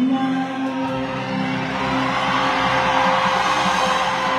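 Live concert music played through the hall's sound system, with long held pitches under a swelling background of crowd noise.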